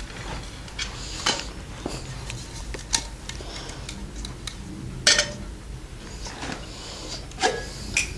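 Small metal camp cookware being handled: a tin hobo stove and a metal cup clinking and knocking as they are fitted together and set down, a handful of separate knocks with the loudest about five seconds in.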